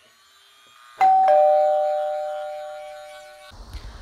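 Two-note ding-dong chime like a doorbell: a higher note struck about a second in, then a lower one just after. Both ring out and fade, then cut off abruptly near the end.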